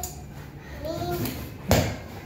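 A child's short vocal sounds, then a ball hitting a hard surface with one sharp thud near the end.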